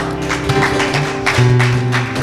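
Live church band playing an instrumental passage without singing: strummed acoustic guitars, bass and keyboard over a steady drum beat.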